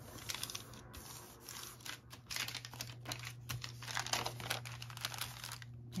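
Coffee-dyed paper sheets rustling and crinkling as they are folded and smoothed by hand, in irregular soft crackles.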